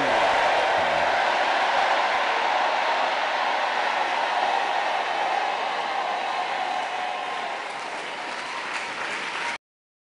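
Congregation applauding at the close of a prayer, the clapping slowly dying down, then cut off abruptly near the end.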